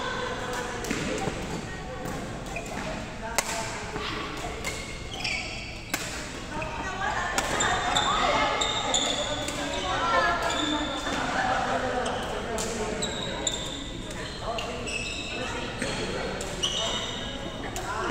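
Badminton play in a sports hall: irregular sharp pops of rackets striking the shuttlecock and many short, high squeaks of court shoes on the floor, with voices carrying in the reverberant hall.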